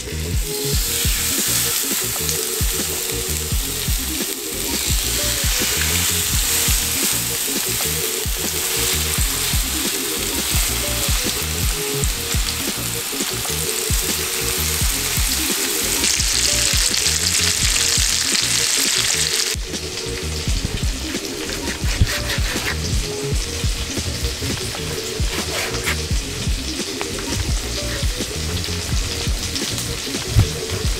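Beef flank steak searing in an oiled frying pan, a loud steady sizzle that turns quieter about twenty seconds in, with background music underneath.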